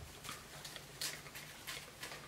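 Scissors cutting across a sheet of cling film, with the plastic film crinkling: a few faint snips and rustles, the clearest about a second in.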